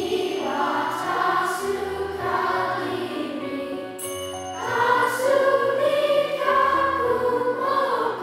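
Children's choir singing a slow song in sustained, held notes over an instrumental accompaniment with low bass notes. A high, bright chime rings once about halfway through.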